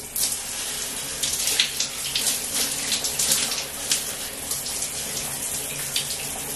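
Shower running: a steady spray of water, with uneven splashes as it hits a person standing under it.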